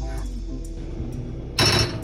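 Background music, then about one and a half seconds in a short, loud clank of a stainless steel pan of milk being set down on a gas stove's metal grate.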